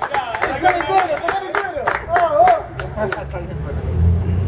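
A group of men calling out and cheering over scattered hand claps. About three seconds in, a low steady engine hum starts up underneath.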